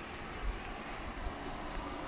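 Steady city street background noise, a distant hum of traffic, with a low thump about half a second in.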